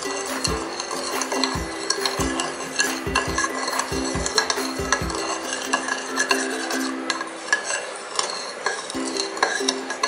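Metal spoon stirring a runny yeast mixture in a ceramic bowl, scraping and clinking against the bowl's sides. Background music plays underneath.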